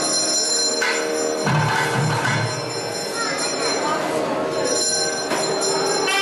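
Temple bells ringing steadily, with voices of a crowd underneath.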